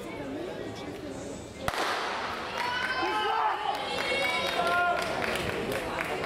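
A starting pistol fires once, a sharp crack about a second and a half in, followed by spectators' voices shouting and cheering on the runners. Voices chatter quietly before the shot.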